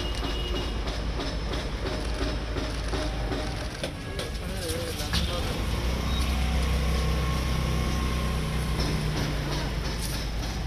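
Engine of a small custom-built six-wheeled car running as it drives slowly, a low steady drone that grows a little louder and steadier about halfway through.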